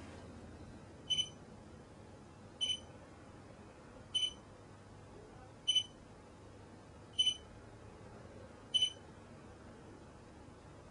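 Short, high electronic beeps repeating evenly, six of them about a second and a half apart, stopping near the end. They signal contact with a remote Bluetooth device.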